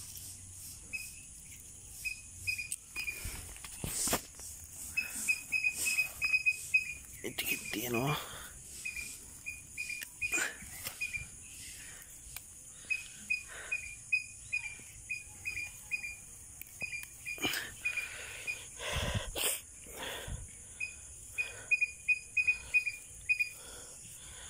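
Outdoor ambience among weeds: a steady high insect drone, with runs of quick, high chirps repeating several times a second, and scattered clicks and rustles of hands handling plant stems.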